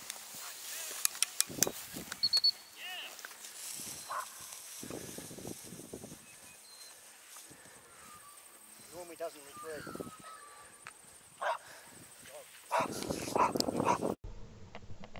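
Short, intermittent calls from a person's voice in open air, with a run of sharp clicks about a second or two in and dog sounds mixed in.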